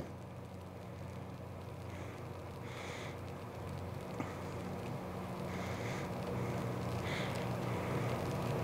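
Gfp 230C cold laminator running, its motor-driven rollers giving a steady low hum that grows slightly louder as a mounting board feeds through them.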